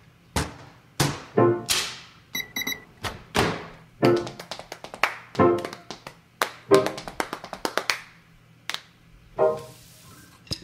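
Drumsticks beating out a percussion solo on kitchen objects, with upturned stockpots and pots among them, in irregular single strikes and quick flurries; many hits ring with a short pitched tone. A brief high metallic tinkle comes about two and a half seconds in.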